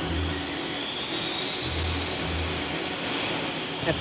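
Large wind tunnel fan starting up: a steady rush of air with a thin whine that rises slowly in pitch as the fan spins up.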